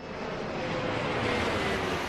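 Jet airplane flyby sound effect: a rush of jet engine noise that builds up, with a faint whine falling slightly in pitch as it passes.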